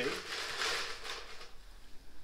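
Ice cubes clattering and rustling in an ice bucket as a couple are scooped out. The sound is strongest in the first second and fades away.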